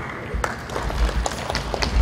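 Audience clapping after a talk, in scattered, irregular claps that start about half a second in.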